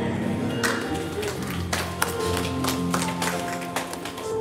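Church band playing softly: held chords with drum and cymbal strikes over them.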